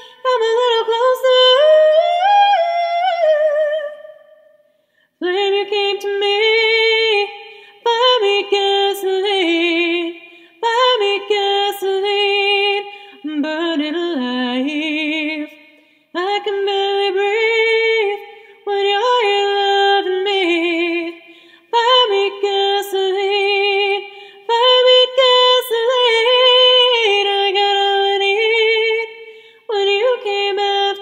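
A cappella female singing in short sustained phrases with vibrato, with a brief pause about four seconds in.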